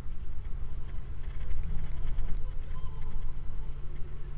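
Steady low rumble of a car's engine and tyres on the road, picked up inside the moving car.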